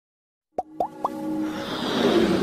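Synthesized intro sound effects: three quick pops that each glide upward in pitch, each a little higher than the last and about a quarter second apart, followed by a swelling whoosh that builds in loudness.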